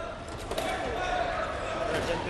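Original chamber audio of commotion in the Lok Sabha: raised men's voices in the hall, one held as a long call for over a second, with dull thuds as an intruder drops into the chamber from the visitors' gallery.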